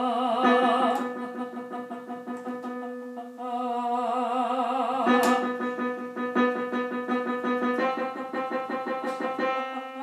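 A lyric soprano sings sustained notes with a wide vibrato over a piano playing repeated chords. The vibrato notes sound at the start and again from about three and a half seconds in.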